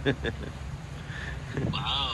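Human laughter in short pulsed bursts at the start, then a brief high-pitched vocal exclamation near the end.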